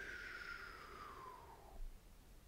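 Paintbrush squeaking as it is dragged along the canvas board in one long trunk stroke: a single faint squeak falling steadily in pitch for nearly two seconds. A soft low knock follows near the end.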